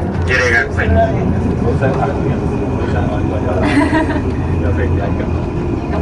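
Scattered passenger voices and laughter in a crowded ropeway cabin, over a steady low rumble.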